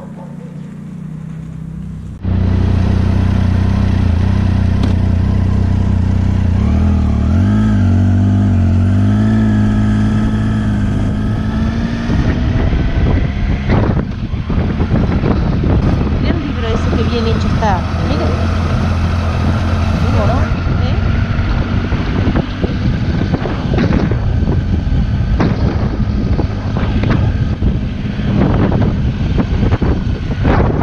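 Motorcycle engine running as the bike rides slowly through town, with steady low engine tones that shift in pitch as the rider changes speed. It comes in suddenly about two seconds in, and from the middle on it turns rougher, with rushing air on the microphone.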